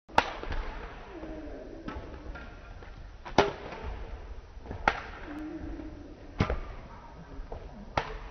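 Badminton rackets hitting a shuttlecock in a rally: four sharp strikes, the last three about a second and a half apart, each echoing off the gym's walls.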